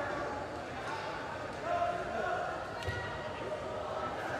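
Arena hall ambience with faint, indistinct voices, and a dull thud about three seconds in from the athlete's foot landing or stamping on the competition carpet.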